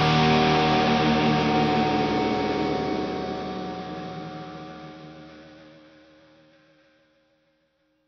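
A hard rock band's final chord of distorted electric guitars and cymbals ringing out and dying away after the last hit. It fades steadily to silence about seven seconds in.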